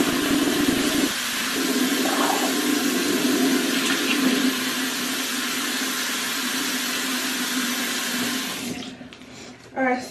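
Bathroom sink tap running steadily, with a low hum under the rush of water, shut off about nine seconds in.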